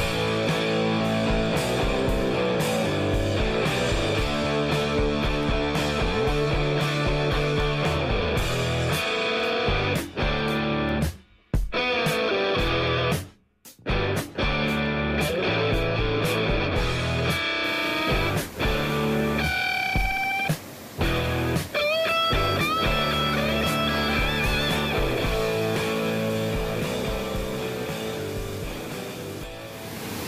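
Background music with a steady beat; it drops out twice briefly near the middle and fades away near the end.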